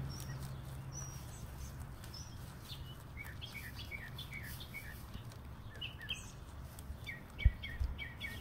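A small bird chirping, a run of short repeated chirps about two a second in the middle, with a few more near the end, over a low steady hum that fades out after the first second. A single sharp thump near the end.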